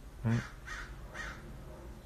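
A man's voice saying one word, followed by two faint short hisses over a low steady background hum.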